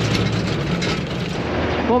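Diesel engine of a MAN KAT 4x4 truck heard from inside the cab while driving on a gravel track, a steady drone with tyre and road rumble. The engine note drops a little near the end.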